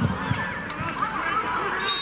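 Football stadium crowd whistling and shouting in many overlapping pitches in the last seconds of stoppage time. A short high whistle blast near the end is most likely the referee's final whistle.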